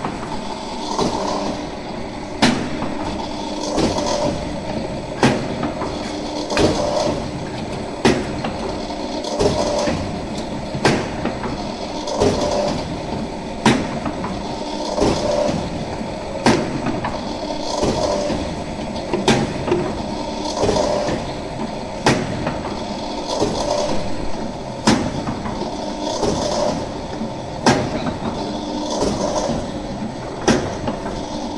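High-speed compressed dry-ration bar press running. It makes a steady mechanical hum, with a sharp clack at an even rhythm of about one every one and a half seconds as the press cycles.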